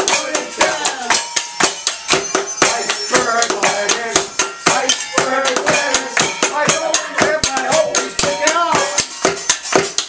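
A fast, steady clattering beat of makeshift percussion, kitchen utensils struck and shaken, with a group of voices singing along over it. It stops suddenly at the end.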